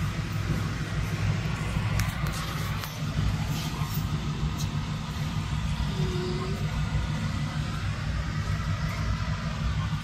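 Store ambience: a steady low rumble with a few light clicks and faint distant voices.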